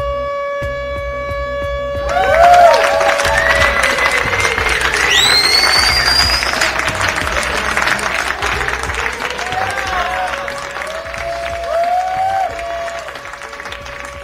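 Produced show-intro music bed: a held horn-like tone over a low pulsing beat. About two seconds in, a noisy cheering-crowd effect with rising and falling whistle-like glides comes in, then fades back toward the end.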